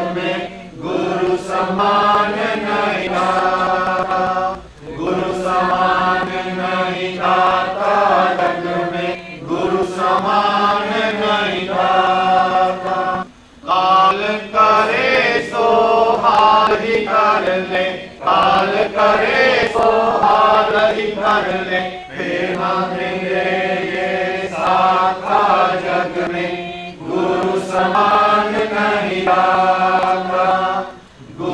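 A Hindi devotional bhajan being sung, its lines in praise of the guru as the greatest giver. The lines are held and drawn out, with short breaks between them, over a steady low drone.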